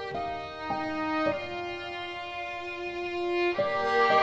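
Background music: a slow violin melody of held notes, changing a few times early on and then holding one long note for about two seconds before moving again.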